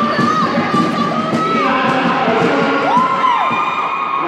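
Basketball spectators shouting and cheering. Two long calls rise and fall in pitch above the crowd: one through the first second or so, the other about three seconds in.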